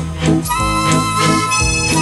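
Instrumental introduction of a song: a sustained reedy melody line held over a pulsing bass and chord accompaniment, with no voice yet.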